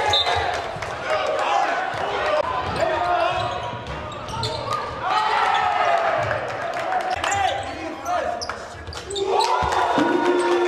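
Basketball bouncing on a hardwood gym floor during live play, with short sharp impacts throughout, mixed with the voices of players and spectators in the gym.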